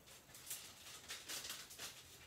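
Faint rustling and handling of paper and craft supplies: a run of short, soft rustles and scrapes.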